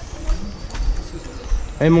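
Faint low bird cooing over irregular low rumbles from walking and camera handling; a man starts talking near the end.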